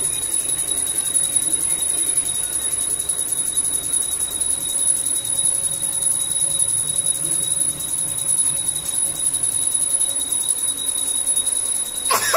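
A steady high-pitched whine made of two thin constant tones, one above the other, over a faint hiss. It does not change or break.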